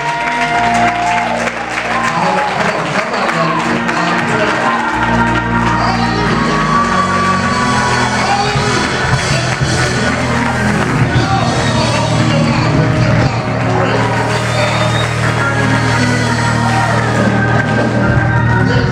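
Church praise music played live in a large hall, with a bass line coming in about five seconds in, over voices from the congregation.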